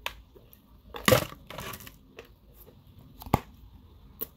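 Edible clay crunching loudly once while being chewed, about a second in, then a sharp click a little after three seconds.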